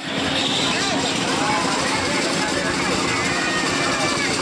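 Fairground crowd: many voices chattering at once over a steady mechanical hum.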